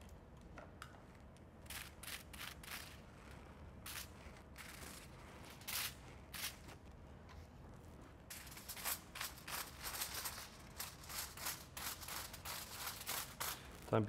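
Scattered light clicks, taps and crinkles of hair-colouring foil and a tint brush working lightener from a bowl, coming thicker from about eight seconds in, over a low room hum.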